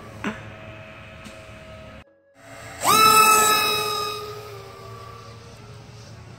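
Twin electric brushless motors (Emax 2205 2300 Kv) and propellers of an RC plane whining at a steady pitch. After a brief near-silent gap about two seconds in, they spool up sharply, rising in pitch to a loud steady whine at full throttle that slowly fades.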